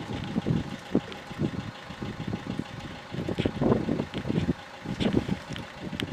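A car engine idling, with an uneven low rumble that surges and eases every second or so.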